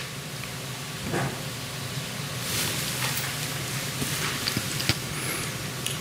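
Courtroom room tone through the microphone feed: a steady low hum and hiss, with a few faint clicks and rustles.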